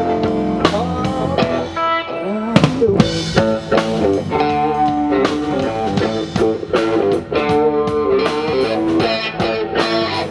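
Live band playing with no singing: electric guitar and bass guitar over a drum kit, with a strong drum hit about two and a half seconds in.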